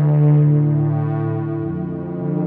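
Slow ambient dungeon-synth music: a strong low synthesizer drone with held chord tones above it, the low note changing near the end.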